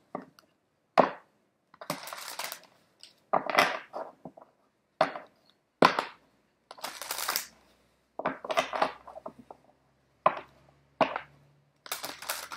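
Romance Angels oracle cards being shuffled by hand: short bursts of cards sliding and flapping against each other, broken up by sharp taps and pauses.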